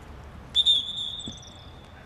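Referee's whistle blown once, about half a second in: a single long high note, loudest at its sharp start and fading toward the end, stopping play for a foul.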